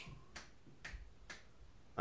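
Three faint, sharp clicks about half a second apart.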